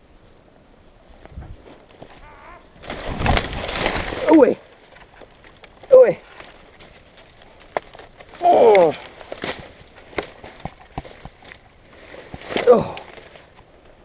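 Dead branches cracking and brush crashing as a man falls through a limb that gives way under him, followed by his short pained grunts and groans, each falling in pitch, with twigs snapping and rustling between them.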